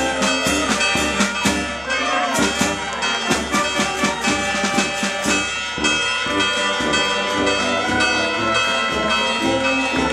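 A brass band playing festive music, with held brass notes over evenly spaced percussion strokes that keep a steady beat, clearest in the first half.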